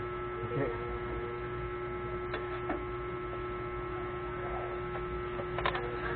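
A steady electrical hum over a low even rumble, with a few faint clicks of a metal spatula on the flat-top griddle about two and a half seconds in and again near the end.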